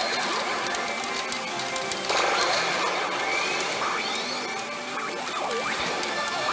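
A pachinko machine's music and sound effects playing during a reach presentation, over the dense, steady din of a pachinko hall.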